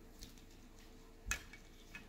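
Quiet room tone broken by a single short knock of small plastic toys being handled, about two-thirds of the way through, as a toy shopping basket is moved.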